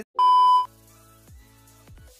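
A steady, loud beep of about half a second, the test-card tone that goes with TV colour bars, inserted as an editing sound effect. It is followed by quiet electronic background music with low bass notes that slide steeply down in pitch.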